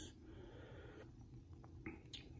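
Near silence: a faint breath through the nose in the first second, then a few faint clicks near the end.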